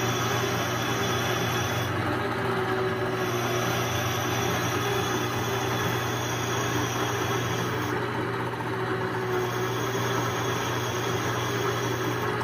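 Metal lathe running steadily with a low hum while a tailstock drill bores out the hub bore of a cast-iron steering knuckle. The higher hiss drops away briefly twice, around two seconds in and again near eight seconds.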